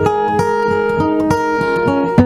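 Acoustic guitar playing a song's accompaniment, picked notes and chords struck about three to four times a second.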